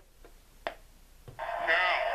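A click as a figure is set on the WWF Titan Tron Live playset, then about a second and a half in the playset's small speaker starts playing its entrance audio, thin and tinny.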